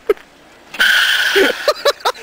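Beach cruiser's rear tyre skidding on asphalt as the coaster (foot) brake locks the wheel: one short, steady screech of under a second, starting about a second in, followed by laughter.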